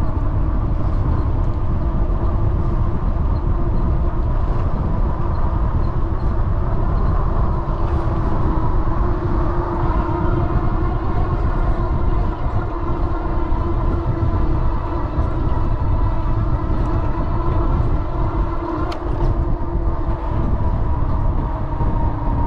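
Wind buffeting the handlebar-mounted microphone of a bicycle in motion, with a steady hum underneath that does not let up.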